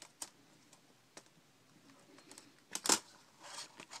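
Scattered light plastic clicks and taps of a Dell Inspiron N5010 laptop keyboard being lifted out of its palm rest, with a louder short clatter about three seconds in.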